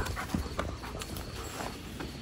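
An 8-month-old German Shepherd moving about at close range: a few soft, irregular short sounds.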